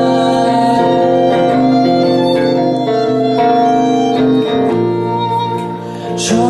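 Violin playing a melody of long held notes over a strummed guitar, an instrumental passage between sung lines. The sound dips briefly just before the end.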